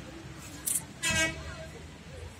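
A short, single vehicle horn toot about a second in, preceded by a brief sharp click, over steady outdoor background noise.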